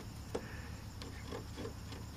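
Faint rubbing and a few light ticks as a bare hand is run over dried Bondo body filler on a van's floor step, feeling whether it is smooth enough for sanding.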